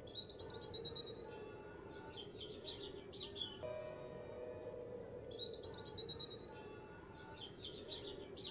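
Faint background music of sustained tones, with bursts of high bird chirps recurring every couple of seconds.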